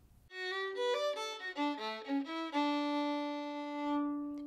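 A fiddle playing a short phrase of quick notes in a traditional Irish style, ending on one long held note.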